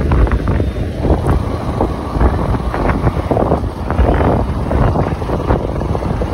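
Wind buffeting the microphone on a moving motorcycle, a loud gusty rush over the low running noise of the bike and road.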